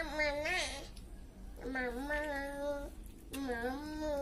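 A child's voice drawing out long, wavering sung or wailed notes in three phrases of about a second each, over a steady low hum.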